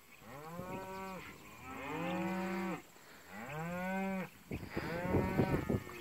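Cattle from a herd of cows and calves mooing: three drawn-out calls, about a second each, one after another, each rising and then falling in pitch. A rougher rustling sound follows near the end.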